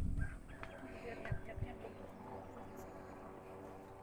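Faint voices in the background, with a few soft low thumps at the very start.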